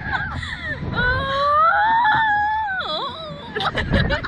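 A rider's long, high-pitched wail on the slingshot ride, held about two seconds and rising then bending down in pitch, with short bursts of laughter around it. Wind rumbles on the microphone throughout.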